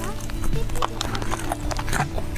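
Close-miked crunching and chewing of crispy fried chicken coating, a quick, irregular run of crisp crackles. Background music plays underneath.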